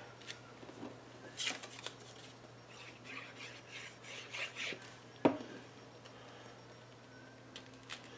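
Faint rustling and tapping of cardstock pieces and a plastic glue bottle being handled and pressed down on a stone countertop, with one sharper click about five seconds in.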